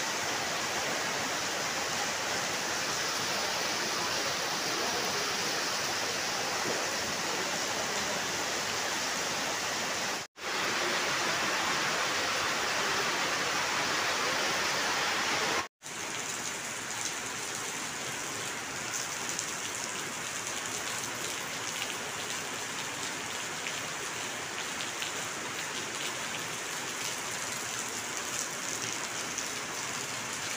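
Heavy rain pouring onto wet paving, a steady hiss of falling water. It breaks off briefly twice, about ten and sixteen seconds in, and is a little quieter after the second break.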